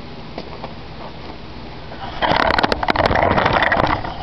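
Faint outdoor background, then about two seconds in a loud, rough rustling and crackling right at the microphone that lasts to the end.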